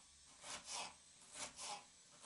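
Kitchen knife slicing a carrot into thin strips on a wooden cutting board: about four faint cuts, coming in two quick pairs.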